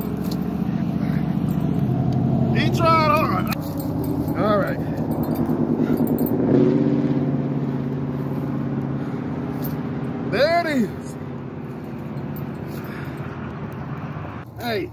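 An engine running steadily, its pitch shifting slightly about two seconds in and again past six seconds. Brief rising-and-falling voice sounds come three times over it.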